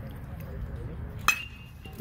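Metal baseball bat striking a pitched ball about a second in: one sharp ping that rings briefly.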